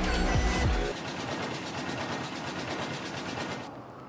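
Background music ends about a second in. Then vintage textile machinery runs with a rapid, even mechanical clatter, which drops away shortly before the end.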